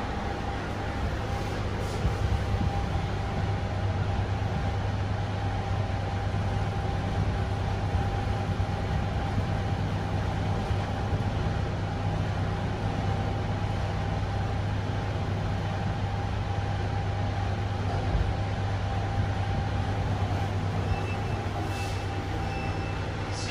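IFE Metis-HS traction passenger lift heard from inside the car while travelling down at its rated 210 m/min: a steady rumble with a low hum and a thin, steady whine.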